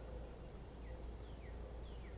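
Quiet workshop room tone: a steady low hum and a thin, steady high whine, with several faint, short, falling chirps.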